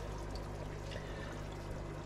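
Steady trickle of water from aquarium filtration, with a faint low hum underneath.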